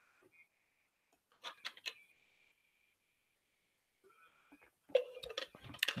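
Quiet room tone over a computer microphone, with a faint steady high tone, a few short faint clicks about a second and a half in, and faint soft noises near the end.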